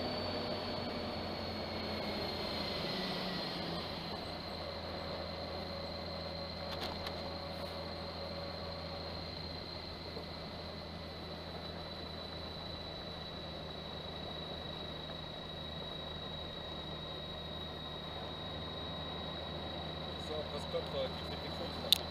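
Honda Gold Wing touring motorcycle riding along, heard from an onboard camera: a steady running and road noise with a thin high whine that drops slightly in pitch over the first few seconds and then holds steady.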